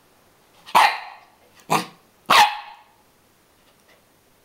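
Small dog barking three times in quick succession, sharp and loud, at a pin badge held out to her that she is afraid of.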